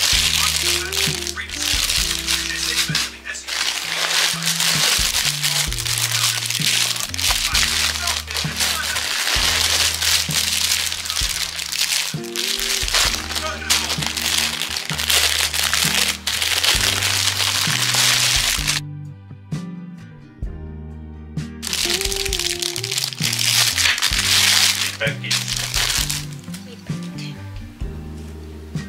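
Plastic packaging crinkling and crackling as it is handled close up, over background music; the crinkling stops for a couple of seconds about two-thirds of the way in.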